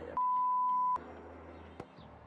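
A single steady, high electronic bleep lasting just under a second, edited into the soundtrack in place of the original audio, as a censor bleep.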